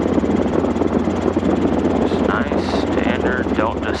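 Robinson R22 helicopter's piston engine and main rotor running steadily in cruise flight, heard from inside the small cockpit as a loud, even drone with a constant low hum.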